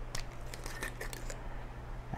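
Faint, scattered small clicks of a screw cap being twisted off a glass liquor bottle.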